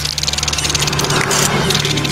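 Film sound effects: a rapid, fine rattling buzz over a low steady hum, easing off about one and a half seconds in.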